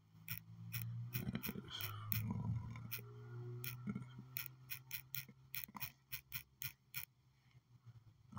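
Faint quick clicks of typing on a phone's on-screen keyboard, about twenty taps at an uneven pace, over a low steady hum.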